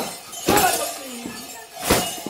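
Sharp metallic clashing strikes beating time for a costumed folk dance: one about half a second in and a louder one near the end, each ringing briefly. Shouting voices come in between.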